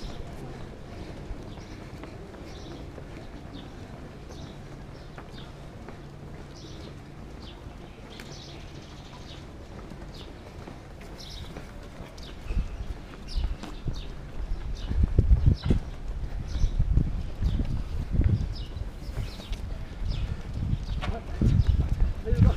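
Boots striking pavement at a steady walking pace, picked up by a camera carried by one of the walkers, over a steady low hum. From about halfway, loud irregular low thumps and rumble on the microphone become the loudest sound.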